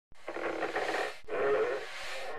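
Cartoon sound effect: a hissing, whistle-like sound with a short break about a second in, then a louder second part.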